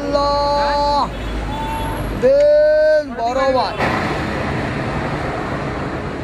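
Vehicle horns sounding in street traffic: one held for about a second at the start, a shorter one, then the loudest about two seconds in, followed by a steady wash of traffic noise.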